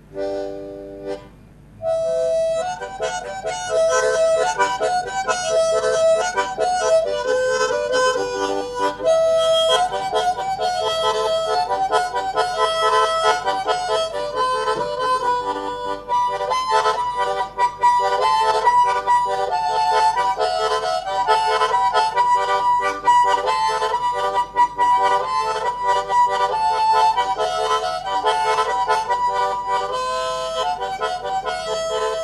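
Harmonica (mouth organ) played solo. A few short chords open it, then from about two seconds in a continuous melody runs on with several notes sounding together.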